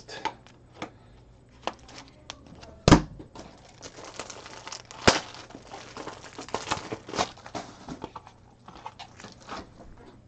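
Trading-card packaging being handled: plastic wrapper crinkling and rustling among small clicks, with a sharp knock about three seconds in and another about five seconds in.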